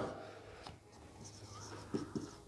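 Marker pen writing on a whiteboard: faint, high-pitched scratchy strokes, mostly in the second half, over a steady low hum.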